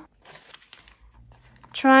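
Faint rustling of paper and embroidery thread being drawn with a needle through a hand-sewn journal spine, in a short pause between a woman's spoken words, which resume near the end.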